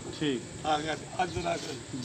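A man talking in Punjabi in short bursts, conversational speech that the recogniser left untranscribed.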